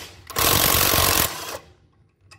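Cordless impact wrench hammering on a wheel-lock key to undo a locking lug nut on an alloy wheel. It runs for about a second, then winds down and stops.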